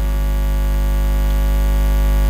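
Loud, steady low electrical hum from the church's sound system, with fainter steady held tones above it.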